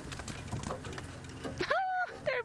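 Open safari vehicle driving slowly over a rough bush track: a low engine rumble with scattered rattles and knocks from the body. Near the end a high voice rises steeply and holds a drawn-out note.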